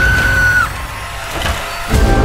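A woman's terrified scream, one high held cry of under a second, right after an axe blade splits through a wooden door, over a low rumble that fades away.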